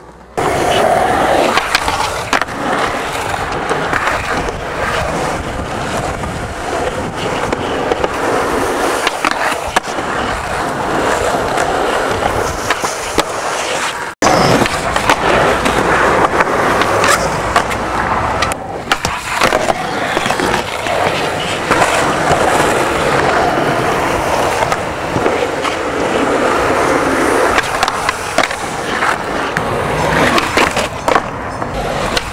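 Skateboard wheels rolling loudly on concrete, with clacks and knocks of the board hitting ledges and landing. The sound breaks off sharply for an instant about halfway through, then carries on.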